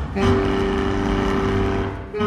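Baritone saxophone with live electronics holding one long note with a rough, noisy edge, which breaks off near the end.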